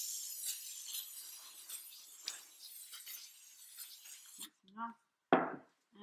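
Aerosol spray mount adhesive hissing as it is sprayed evenly over the back of a sheet of paper, tailing off and stopping about four and a half seconds in. Near the end a single sharp knock, the loudest sound, as the metal can is set down on the table.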